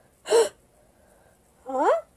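A short cartoon-voice gasp about a quarter second in, then near the end a brief vocal cry whose pitch rises.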